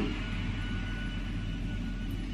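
Vacuum cleaner running steadily, a low drone with a faint steady high whine.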